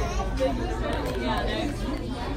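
Background chatter of many voices in a busy restaurant dining room, over a steady low hum.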